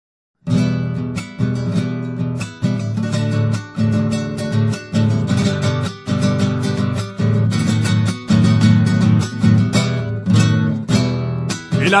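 Instrumental intro on strummed acoustic guitar, a steady rhythm of strokes that starts about half a second in. A singing voice comes in at the very end.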